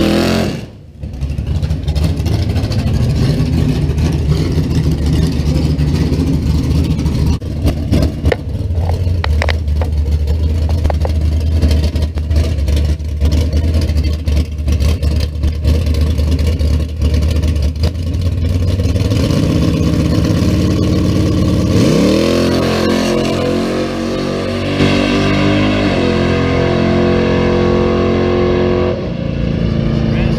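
1966 Chevrolet Chevelle drag car's engine. A burnout rev falls away about a second in, and the engine runs at low revs on the starting line. About 22 s in it launches, rising sharply in pitch and stepping through gear changes as it accelerates away.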